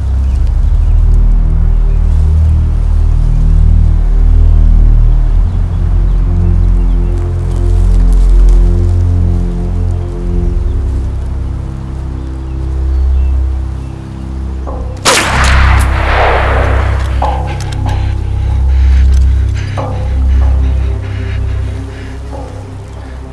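Tense film score of deep, sustained low drones. About fifteen seconds in, a sudden loud bang like a gunshot or blast breaks in and trails off over a couple of seconds, followed by a few smaller sharp hits.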